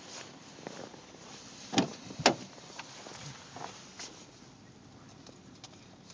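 Car door being opened and climbed through: two sharp knocks about two seconds in, then a few softer clicks and rustles.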